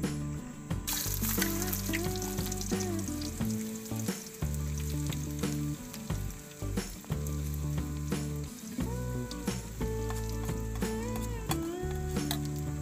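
Food sizzling in hot oil in a wok over a wood fire, the sizzle starting suddenly about a second in as it goes into the oil, with music playing underneath.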